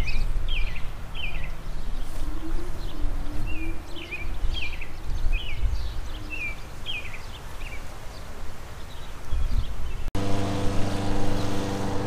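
A bird chirping over and over in short downward-sliding notes, about two a second, over a low steady rumble. About ten seconds in, the sound cuts abruptly to an engine idling steadily.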